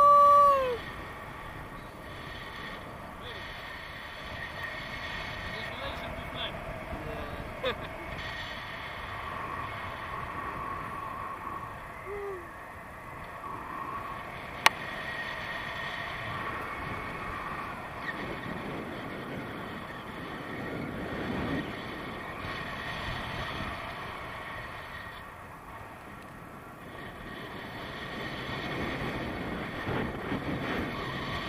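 A man's long held shout of excitement in the first second, then steady wind rushing over the camera microphone of a tandem paraglider in flight, with a single sharp click about fifteen seconds in.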